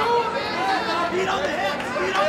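Many voices shouting and calling out over one another: a fight crowd yelling during a grappling exchange.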